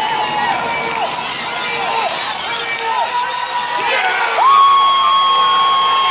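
Spectators in the stands cheering and yelling for a base hit, many short high-pitched shouts overlapping. About four and a half seconds in, a louder single held high note joins and carries on to the end.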